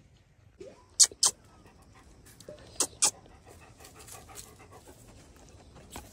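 A Bhote Kukur dog panting softly. Two pairs of sharp clicks stand out above it, one about a second in and one near three seconds in.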